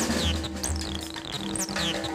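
Jazz drum kit played solo, quietly, with several short high sounds that slide down in pitch over a low pulsing thud.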